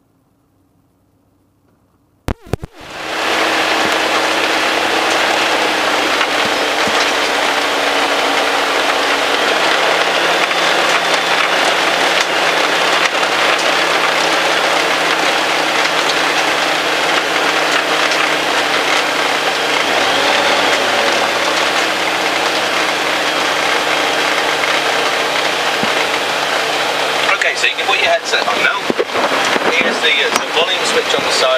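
Light aircraft's propeller engine running on the ground, heard from outside at the wing strut with heavy wind rush from the propeller wash on the microphone. It cuts in suddenly after about two seconds of quiet and a couple of clicks, the engine note steps down about ten seconds in, and gusty buffeting crackles near the end.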